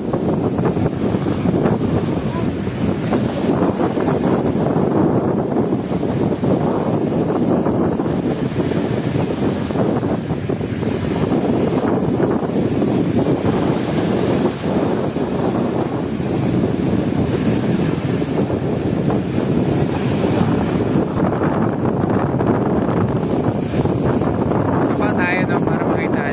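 Steady wind buffeting the microphone over waves breaking and washing against the rocks of a seawall.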